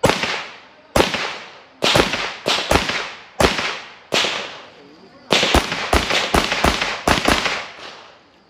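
A string of about eighteen gunshots fired at steel plate targets, each with a short echoing tail. They come about a second apart at first, then in a fast burst of about four a second over the last few seconds.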